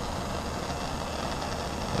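Handheld gas torch burning steadily, its flame playing on an aluminium can, giving a continuous hiss.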